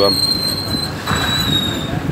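Hoist line squealing as a pair of yellowfin tuna are lowered into a bin: a steady high-pitched squeal that drops slightly in pitch, with a short break about halfway through, over a low mechanical rumble.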